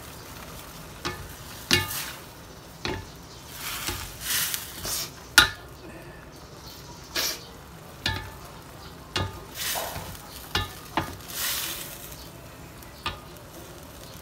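Wooden spatula stirring and turning wet noodles in a stainless steel wok: irregular knocks of the spatula against the pan and soft swishes of the saucy noodles, over a low sizzle of the sauce starting to boil.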